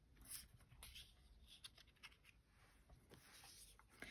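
Near silence, with a few faint rustles and light taps of paper and card being handled and set down on a cutting mat.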